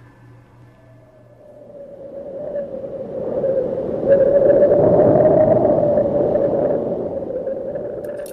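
Eerie swelling drone used as a scene-transition effect, building slowly to a peak about halfway through and then fading away.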